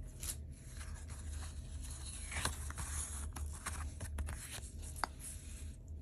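Cardstock scratch-off lottery ticket being handled and smoothed flat on a paper pad by hand: soft rustling and scraping of card against paper, with a few sharp clicks, the sharpest about five seconds in.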